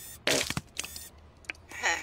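Cartoon sound effect of a wet splatter: two short spraying, hissing bursts within the first second, as the robot character squirts a dark liquid onto the ground. A voice or laugh comes in near the end.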